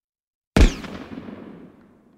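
One sudden deep boom about half a second in, a cinematic impact hit for the logo reveal, its ringing tail fading over about a second and a half.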